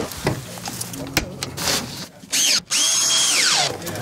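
Cordless drill-driver tightening a solar-panel mounting clamp: a short burst of motor whine, then a longer run that spins up, holds a steady high whine for about a second and glides back down. Clicks and handling knocks come before it.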